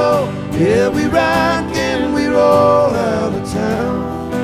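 A live country band playing: strummed acoustic guitars with electric guitar and keyboard, under a man's lead vocal that slides into and holds long notes.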